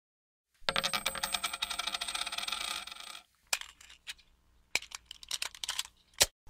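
Sound effect for an animated logo: about two and a half seconds of rapid metallic clicking with a ringing tone. It is followed by a few separate sharp clicks and a short quick run of clicks near the end.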